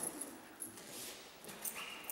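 A dog whining with a short, high-pitched whine near the end, with a few light clicks around it.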